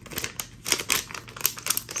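Plastic packaging crinkling in the hands, in a run of irregular crackles: a resealable plastic pen pouch being handled and set down.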